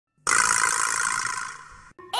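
A loud rushing hiss that starts suddenly about a quarter second in, slowly fades and cuts off abruptly near the end.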